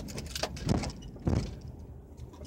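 Two dull thumps about two thirds of a second apart, typical of a car's front and then rear wheels going over a bump or dip in the road, heard from inside the cabin over low road and engine noise, with light rattling clicks from loose items or the camera mount.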